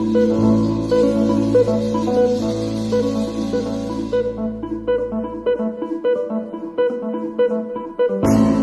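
Live jazz trio of electric guitar, bass guitar and drum kit playing. About halfway through the drums fall away, then the bass, leaving the guitar picking single notes alone near the end.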